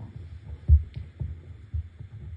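A few dull low thumps, the loudest about three-quarters of a second in.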